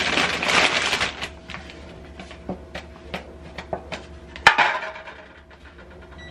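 A plastic carrier bag rustles as packaged ingredients are pulled out of it. Scattered light clicks and knocks follow as packages are set on a countertop. The loudest is a sharp knock about four and a half seconds in, followed by more rustling.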